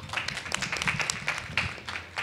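A room of people applauding, many hands clapping at once in a dense, even patter.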